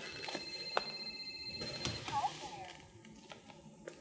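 Little Tikes Discover Sounds toy smartphone with its button pressed, giving a steady electronic beep for about two seconds, then a short gliding electronic sound from its small speaker.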